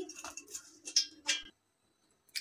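A few light taps and rustles of fried green chillies being turned by hand on a steel plate, cutting off suddenly about halfway through.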